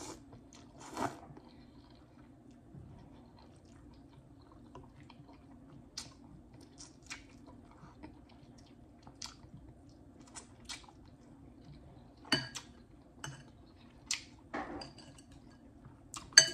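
Faint chewing and small wet mouth clicks of someone eating ramen noodles, with a short slurp about a second in. Near the end come a few louder sharp knocks of the metal fork against the glass bowl.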